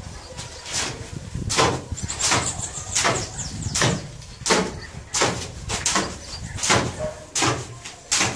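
Steel hoe blade scraping across a concrete floor as it is dragged through a semi-dry sand-and-cement subfloor mortar mix, about ten strokes, one every three-quarters of a second.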